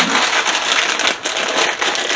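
Plastic bag of dried wide egg noodles crinkling steadily as it is handled.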